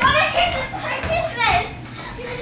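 Children's excited voices without clear words, rising and falling in pitch, loudest at the start and again about one and a half seconds in.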